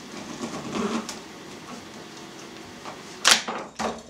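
A large kitchen knife cutting through a hard wheel of aged cheddar. The cutting is faint, and near the end come two sharp knocks about half a second apart as the blade breaks through and the halves hit the cutting board.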